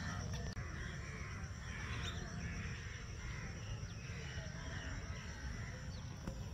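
Faint outdoor ambience of birds calling, with many short calls scattered throughout over a low steady rumble.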